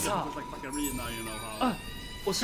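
A high-pitched, wavering voice crying out, over a faint steady tone and music.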